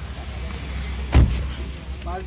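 A car door shuts with one loud thump about a second in, over the low steady hum of the car.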